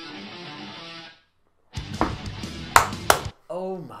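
A snippet of guitar music that cuts off about a second in, followed after a brief silence by a louder, rough noisy burst with two sharp peaks lasting about a second and a half.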